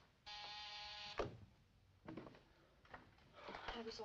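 An electric buzzer sounds once for about a second, followed by a sharp click. A few faint knocks follow, and a voice starts near the end.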